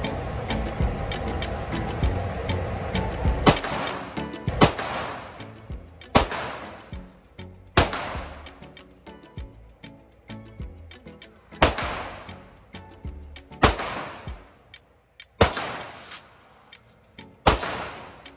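Pistol shots fired one at a time in an indoor shooting range: about nine sharp reports, spaced every one and a half to two seconds from about three seconds in, each with a short echoing tail off the range's walls.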